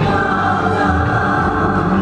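Live band music with a man singing into a stage microphone over an electric guitar and band, with several voices blending in the singing.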